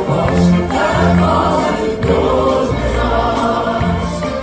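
Several singers singing together in a group over a symphony orchestra, the whole ensemble amplified through a concert sound system and heard from the audience.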